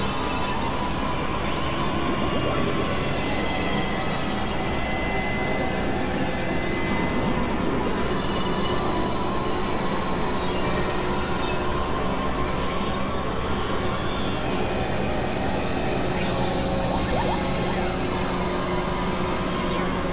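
Experimental electronic noise-drone music from synthesizers: a dense, steady wash of noise with held high and low tones layered over it. A couple of falling sweeps in the high range cut through, one about a third of the way in and one near the end.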